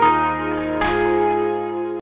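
Closing music sting of bell-like chime notes ringing out, with a fresh strike just before the one-second mark, the notes sustaining and slowly fading.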